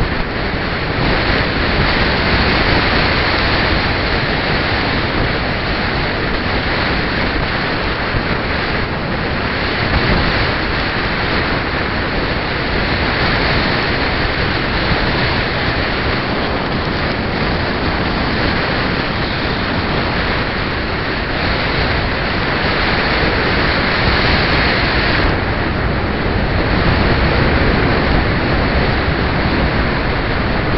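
Steady wind rush over the microphone of a camera riding on a moving bicycle, mixed with road and passing traffic noise.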